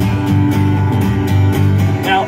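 Acoustic guitar strummed in a steady rhythm over a bass guitar holding sustained low notes, a two-piece band playing live between sung lines.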